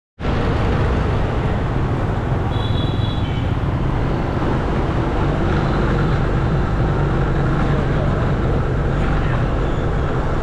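Steady low rumble of a motorbike engine and wind noise on a ride, with a short high beep about two and a half seconds in.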